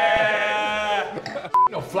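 A man's drawn-out, high vocal sound, laugh-like and held steady for about a second before trailing off. About a second and a half in comes a short, loud beep tone of the kind used as a censor bleep.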